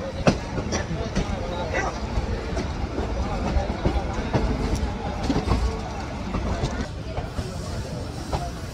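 Passenger coaches of an Indian express train rolling out of a station, heard from an open coach doorway: a steady rumble with irregular clacks and knocks as the wheels pass over rail joints.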